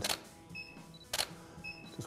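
Camera shutter clicking twice, about a second apart, as studio flash shots are taken. Each click is followed about half a second later by a short high beep from the flash unit signalling it has recycled.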